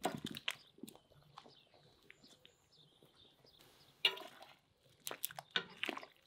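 Whole peeled potatoes tipped from a glass bowl splash into a cast-iron cauldron of boiling broth, with a cluster of sharp splashes and plops at the start and more about four and five seconds in. Faint bird chirps run behind.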